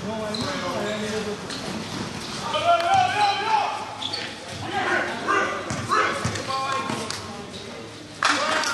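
Live basketball game: players and onlookers calling out, unintelligible, over the dull bounces of a basketball on a hard court. The voices get louder about a third of the way in and again past the middle.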